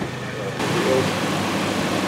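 A car engine idling: a steady hiss with a faint low hum underneath, cutting in abruptly about half a second in.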